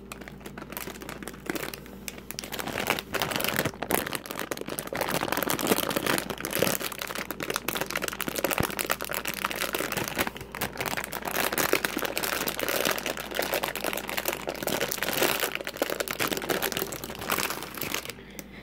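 A plastic candy wrapper crumpled and crinkled close to the microphone: a dense, unbroken crackle that starts about a second in.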